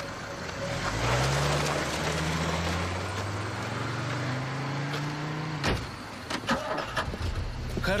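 Car engine running and pulling away, its low hum rising slowly in pitch as it gathers speed. It cuts off abruptly a little before six seconds in.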